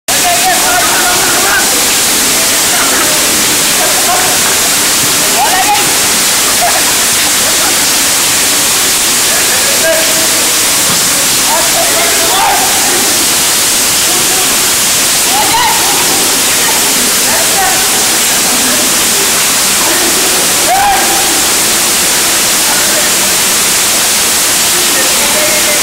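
Heavy rain falling, a loud steady hiss, with people's voices shouting over it now and then.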